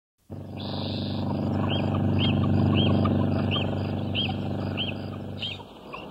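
A vehicle engine running with a steady drone that swells and then fades near the end. A short high chirp repeats evenly over it, about one and a half times a second.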